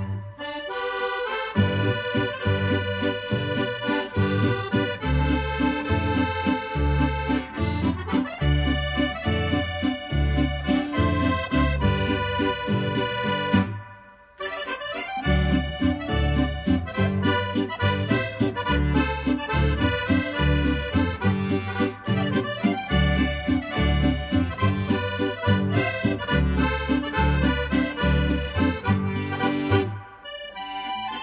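Traditional Friulian folk music led by accordion, with guitar and double bass keeping a steady dance rhythm. The music breaks off for a moment about halfway through, then carries on.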